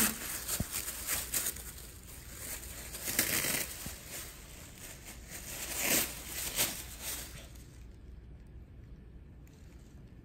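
A Shih Tzu tearing and crumpling a sheet of white paper with her mouth: irregular bursts of paper rustling and ripping, dying down after about seven and a half seconds as she settles on it.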